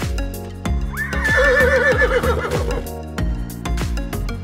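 A horse whinnying once, beginning about a second in with a sharp rise and then quavering for about two seconds, over background music with a steady beat.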